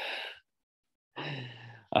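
A man sighs: a short breath at the start, then about a second in a low voiced sigh that fades away.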